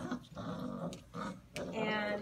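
Five-week-old basset hound puppies growling as they play-fight, in a few short rough bursts.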